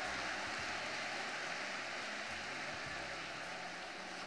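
Audience applauding, a fairly quiet, even patter of many hands that fades slightly toward the end.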